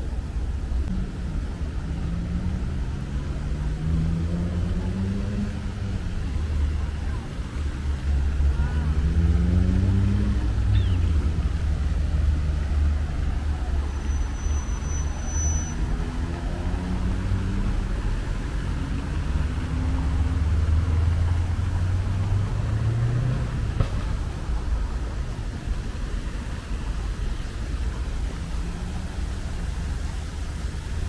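City street traffic with a steady low rumble. Several vehicle engines rise in pitch as they pull away and accelerate past, one after another.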